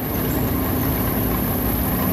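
A tank's engine running steadily as the tank drives, a deep even drone with a constant thin high whine above it.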